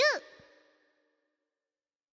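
A voice finishing the programme's title call: the last word ends just after the start and trails off in an echo that fades out within the first second, followed by dead silence.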